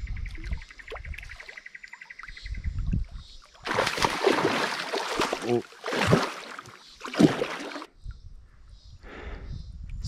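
Water splashing as a hooked Australian lungfish thrashes in the shallow water at the creek's edge, with several loud splashes about four to eight seconds in.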